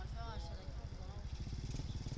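An engine idling nearby: a low steady rumble with a fast, even pulse, and a faint voice in the first second.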